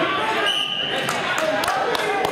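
Shouting from spectators and coaches in a gym during a wrestling bout, with a short, steady, high whistle blast about half a second in, as the referee stops the action. A few sharp slaps or thumps follow in the second half.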